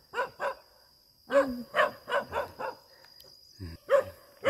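Dog barking in short sharp bursts: two barks right at the start, then a run of four barks about a second later.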